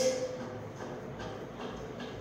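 Faint regular ticking, about two or three ticks a second, over low room noise.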